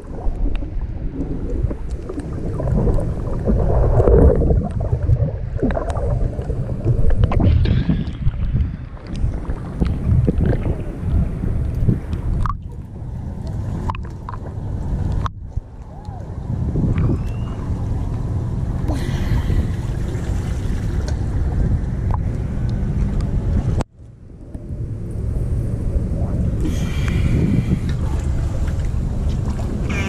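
Muffled sloshing and low rumble of water around a waterproof action camera held at and just below the surface, with a few sudden breaks in the sound.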